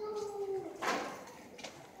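A faint, drawn-out vocal sound from a person, a single held tone sliding slightly down in pitch, followed by a short rustling noise just before a second in.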